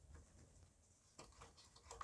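Near silence, with a few faint small clicks.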